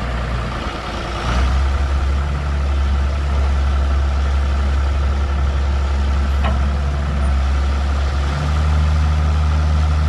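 John Deere 7400 tractor's six-cylinder diesel engine running steadily while working the front loader hydraulics as the bucket lifts. The engine gets louder about a second in, there is one short sharp sound past the halfway mark, and the engine note shifts near the end.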